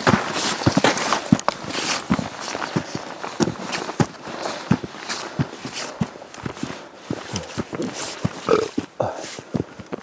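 Footsteps through dry grass, with an uneven run of crunches and crackles as stalks break and brush against trouser legs.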